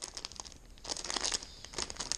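Plastic packages of soft-plastic fishing lures crinkling as they are handled, in two spells of rustling: one through the middle and a shorter one near the end.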